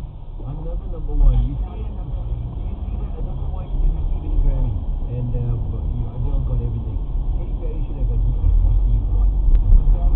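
Low rumble of a car's engine and tyres inside the cabin, picked up by a windscreen dashcam as the car pulls away from a crawl in traffic; it grows louder toward the end as the car gathers speed. Muffled voices talk over it.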